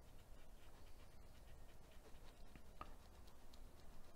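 Near silence: faint scratching and dabbing of a paintbrush on canvas, with scattered small ticks over a low steady hum.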